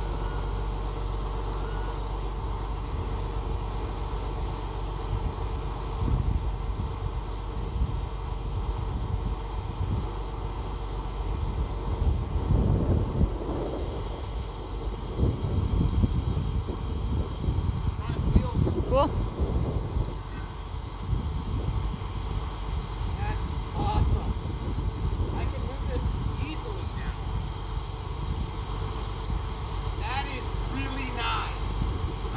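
Truck engine running steadily to power a truck-mounted hydraulic crane as it lowers a load, with louder, rougher stretches in the middle.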